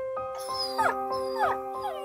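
Cartoon dog whimpering in a few short, falling whines over soft background music of held notes.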